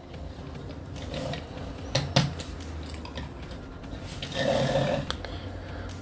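Plastic toy-figure handling: a few light clicks and taps about two seconds in as a clear plastic sword and axe are fitted into the action figure's hands and the figure is stood on a table. A short low hum sounds a little past the two-thirds mark.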